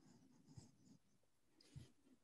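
Near silence on an open microphone: faint rustling with a soft knock about a quarter of the way in and another near the end.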